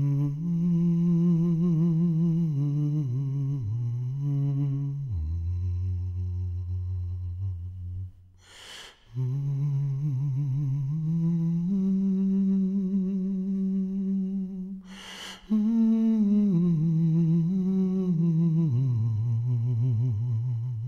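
A man humming a slow, wordless melody solo, with long held notes that waver in vibrato and a low held note in the middle. Deep audible breaths come between phrases, about nine and fifteen seconds in.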